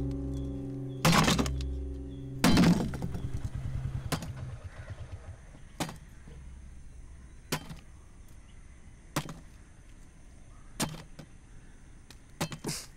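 Heavy strikes with a bar on scrap in a junkyard, about one every second and a half, loud early on and fainter later. A low sustained music chord sounds under the first strikes and fades out a few seconds in.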